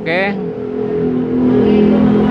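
Motorcycle engine running at a steady speed, growing somewhat louder toward the end.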